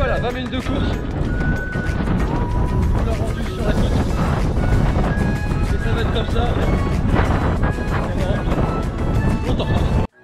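Strong wind buffeting the microphone: a loud, steady rumble under a man talking, which cuts off abruptly at the end.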